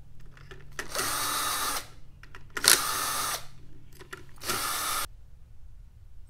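Power drill/driver with a socket backing out the screws that hold the old control bracket in a grinder pump, in three short runs of under a second each, with brief pauses between.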